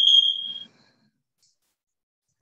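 A single high-pitched electronic beep, one steady tone that cuts off sharply under a second in.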